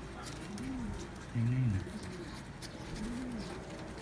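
Domestic pigeons cooing: a series of low rising-and-falling coos about a second apart, with one louder, deeper coo near the middle. Light ticks of beaks pecking grain from a hand run underneath.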